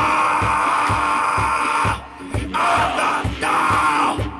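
Live band playing loud music: a steady, fast drum beat, about two and a half strokes a second, under a loud, held, mid-pitched sound that breaks off briefly about halfway through.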